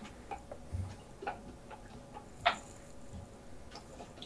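Faint, irregular clicking of a computer mouse and keyboard being worked, about ten clicks, with one louder click about two and a half seconds in.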